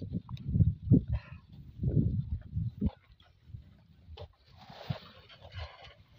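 A thrown cast net landing on a ditch's surface, its weighted rim hitting the water in a spreading splash about a second long near the end. Before it, louder irregular low muffled bumps and rumbles.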